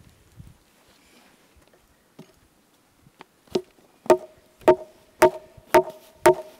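Sharp wooden knocks at an even pace of about two a second, starting about three and a half seconds in, each with a ringing tone that hangs between strikes. Before that there is only faint handling noise.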